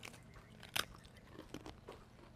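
Faint crunching of thin crisp coconut biscuits being bitten and chewed: a few soft, separate crunches spread through the moment.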